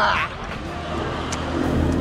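A man's short, loud "ah!" cry, his reaction to downing a shot of tequila, right at the start. A low steady rumble follows for the rest of the moment.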